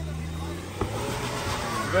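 Suzuki Jimny's engine running under throttle as it climbs a loose dirt slope, its low hum fading after about half a second into a broad scrabbling noise of tyres on dirt. A single sharp knock just under a second in.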